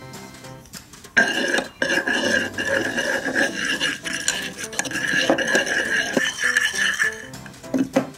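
A small toy spatula stirring and scraping liquid in a red toy saucepan, with background music playing.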